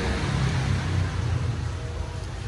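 A steady low mechanical rumble with a faint hiss above it.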